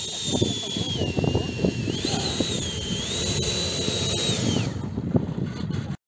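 90 mm electric ducted fan (Wemotec Midi Fan Evo) on an RC jet whining, its pitch dipping and rising several times as the throttle is worked, then winding down about five seconds in.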